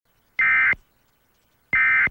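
Emergency Alert System end-of-message data bursts: two short, identical buzzing digital squawks about a second and a third apart, the coded signal that closes an EAS alert.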